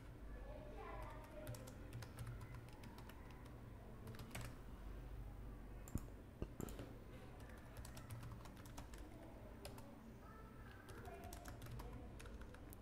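Faint, irregular keystrokes on a computer keyboard as terminal commands are typed, with a louder single click about six seconds in, over a low steady hum.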